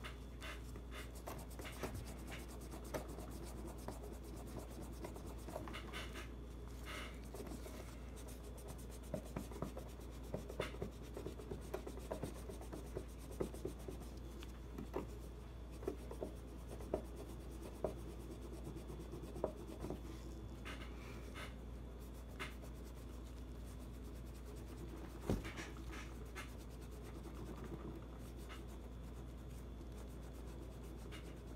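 A rag scrubbing acetone over a bare steel pistol slide: a steady, faint rubbing with scattered light clicks and taps from the slide and gloved hands.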